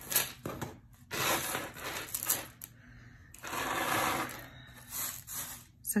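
A handful of necklaces with metal chains, glass and metal beads and leather cords clinking and rustling as they are handled and laid in a pile on a table. The sound comes in several short spells with quieter gaps between them.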